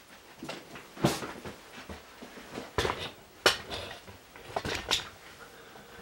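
Handling noise as the camera is moved and bumped: a run of irregular knocks and clicks with rubbing in between, loudest about a second in and at about three and a half seconds.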